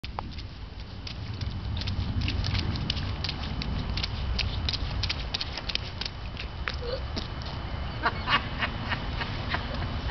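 A toddler's rain boots stomping and splashing in shallow gutter water: many quick, irregular small splashes, busiest about eight seconds in, over a steady low rumble.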